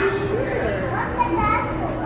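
Children's voices and chatter, high and wavering, with no clear words.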